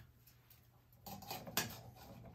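Faint handling sounds of a stainless-steel cocktail shaker being gripped on a bar top, with a light click about a second and a half in.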